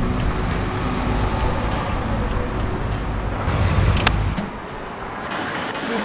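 A car on the move: a steady low rumble of engine and road noise. About four seconds in comes a sharp click, then the rumble cuts off, leaving a quieter background with a few faint clicks.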